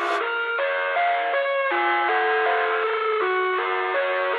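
Instrumental background music: a melody of held chords that change every half second or so, with no bass line.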